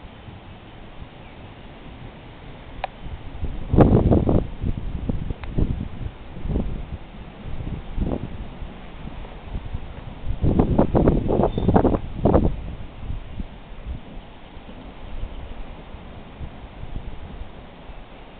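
Gusty wind ahead of an approaching thunderstorm buffeting the microphone, in two strong rough bursts, about four seconds in and again about ten to twelve seconds in, with smaller gusts between.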